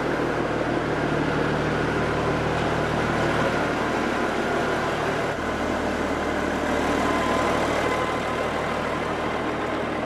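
Peterbilt semi truck's diesel engine running steadily at low speed as the truck pulls slowly away. The engine note shifts about halfway through.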